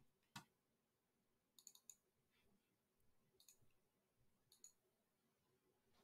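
Faint computer mouse clicks over near silence: a single click just after the start, then a quick cluster of about three, and a few scattered clicks later on.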